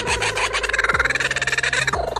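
Laughing kookaburra calling: a rapid, rasping chatter of many notes a second, building into its laugh. This is the bird's territorial call.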